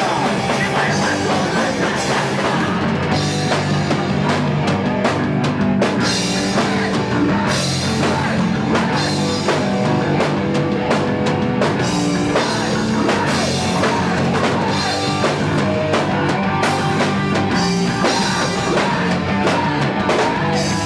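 A rock band playing live: electric guitar over a drum kit, loud and continuous.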